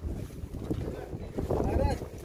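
Wind buffeting the microphone, an uneven low rumble, with a short snatch of a man's voice near the end.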